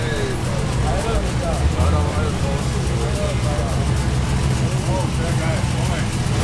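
A vintage truck's engine running steadily at low revs as it rolls slowly by, with people talking over it.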